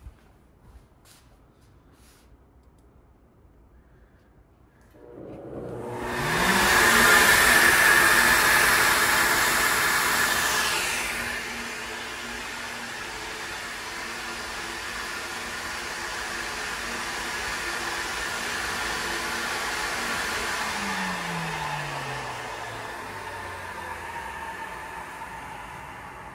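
A cylinder-head flow bench is switched on about five seconds in. Its motors spin up with a rising whine into a loud rush of air drawn through the intake port, here flowed at .400 in valve lift and 28 in test pressure. The rush eases to a steadier level after about five seconds, and a falling whine comes late on as it winds down.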